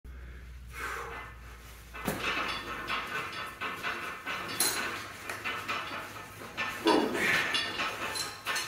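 Light knocks, bumps and rustling as a person climbs a steel power rack and hooks their legs over its padded roller to hang upside down, with a sharp click about two seconds in. A low hum sounds under the first three seconds, then stops.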